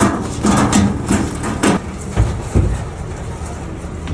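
Wire crab pot rattling and knocking as it is shaken out, crabs clattering down into a sorting box, over the steady low hum of the workboat's engine. The clatter is densest in the first two seconds, followed by two heavier thumps.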